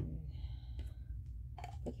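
A sharp click, then a few faint light clicks as a clear plastic Cirkul water bottle is handled, over a low steady hum.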